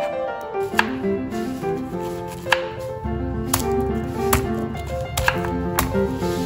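Background music with a steady melody, over about six separate sharp chops of a knife cutting through vegetables onto a wooden cutting board.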